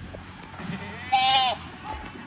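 A goat bleating once, a short, high, wavering call about a second in: begging for pods to eat.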